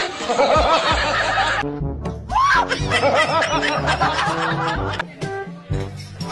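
Laughter, in short repeated bursts, over background music with a steady bass line.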